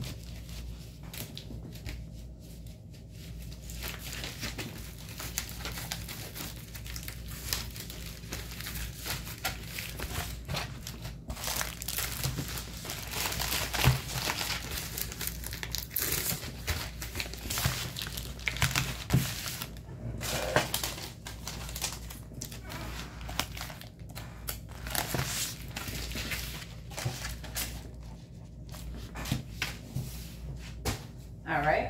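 Pink padded poly mailer crinkling and rustling as it is handled and items are packed into it, with scattered small clicks and taps. The handling is busiest about halfway through.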